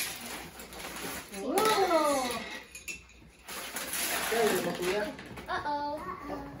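Children's voices in a room, with a drawn-out call that rises then falls about two seconds in, over the rustle of gift bags and wrapping paper being handled.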